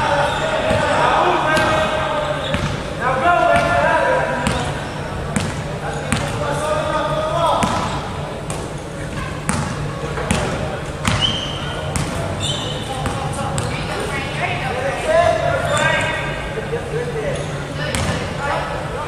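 A basketball bouncing on a hardwood gym floor, several sharp bounces, with players shouting to one another in bursts.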